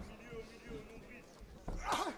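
A short, loud shout from ringside about 1.7 s in, over a low murmur of the audience, with a sharp knock right at the start.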